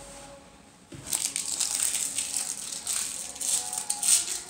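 Loud, irregular crinkling and rustling that starts about a second in, from a small object being handled and worked between the hands close to the microphone.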